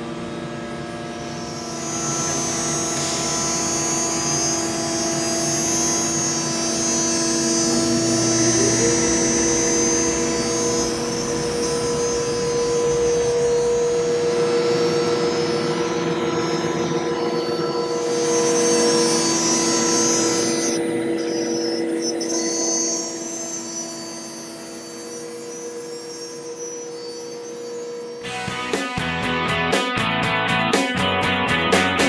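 AXYZ Trident CNC router running a cut: a steady high-speed spindle whine over a broad rushing noise of dust extraction, with one tone gliding up in pitch about nine seconds in. Guitar music comes in near the end.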